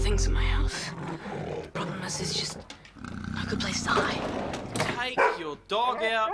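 Music cuts off under a second in; then a dog growling and sniffing in irregular bursts, with a wavering, whine-like cry near the end.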